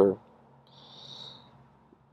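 A man's speaking voice breaks off into a pause, with a faint high hiss of under a second about a second in.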